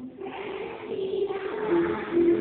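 A large group of children singing together in unison, with long held notes.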